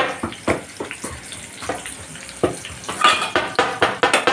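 A utensil stirring and scraping in a nonstick kadai of onions and green chillies frying in oil: a series of irregular clinks and taps against the pan, a few per second, over a light sizzle, with a longer scrape about three seconds in.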